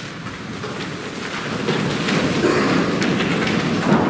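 A church congregation getting to their feet: a shuffling, rustling noise of many people rising from the pews that swells from about a second and a half in, with a few light knocks.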